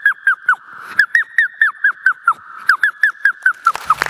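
A boy's vocal mimicry into a microphone: a rapid string of short, high, squeaky chirps, each sliding down in pitch, about four or five a second, with two brief pauses. Applause starts right at the end.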